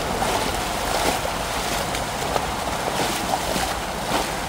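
Floodwater flowing and splashing over a street and sidewalk: a steady rush with several short, louder splashes.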